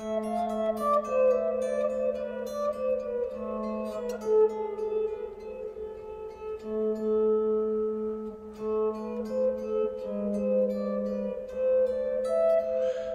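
Electric guitar playing an A harmonic minor etude: a running line of single plucked notes over held bass notes that step down a half step, A to G sharp, and back, outlining A minor and E7.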